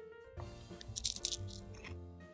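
Crunching as a dehydrated grasshopper is bitten and chewed, with a cluster of crisp crunches about a second in and a few more near the end, over soft background music.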